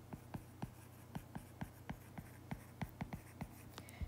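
Faint clicks and scratches of a stylus handwriting on a tablet screen, about four or five quick taps a second, over a low steady hum.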